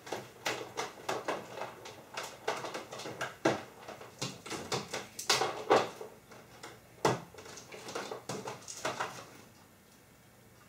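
Irregular clicks, taps and rustles of hands handling small parts and cables on a workbench, as an adapter is connected up.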